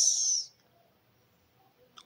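A woman's voice trailing off in a drawn-out, high hiss like a held 's' or 'sh', fading out about half a second in, then near silence with a faint click at the very end.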